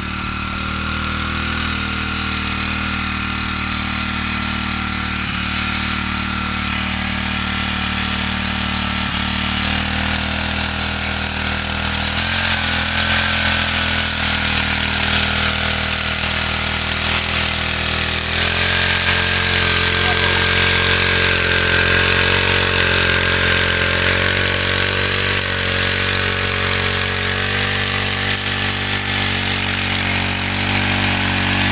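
Small petrol engine of a push-type paddy weeder running steadily as it drives the rotary weeding wheels through the flooded rice rows, getting a little louder after about ten seconds.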